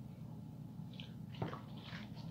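Faint wet mouth sounds of a man chewing a forkful of macaroni and cheese, with a couple of small clicks about a second in.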